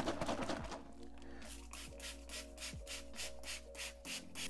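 Hand trigger spray bottle misting a plant, a quick run of short hissing squirts at about four a second, starting about a second in.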